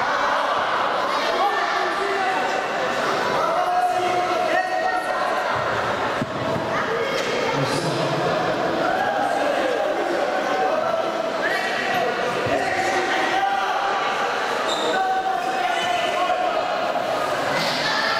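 Several voices shouting almost without pause, echoing in a large hall, with a few short thuds among them.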